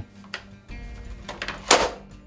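A large neodymium disc magnet pulls an LCD monitor toward it. A low scraping rumble comes as the monitor's stand is dragged round on the table, then the magnet strikes the monitor's plastic housing with one sharp clack near the end. Soft background music plays underneath.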